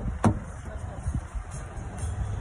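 Car door being unlatched and pulled open: one sharp click a quarter second in and a fainter knock about a second in, over a steady low rumble.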